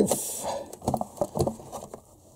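Rustling, then a run of light clicks and knocks as a plastic plug-in power adapter is pushed into a mains extension socket and the cables around it are handled.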